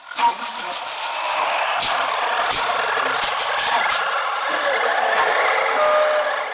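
Experimental music for flute and percussion: a steady, airy hiss with scattered light clicks, and a short pitched note near the end.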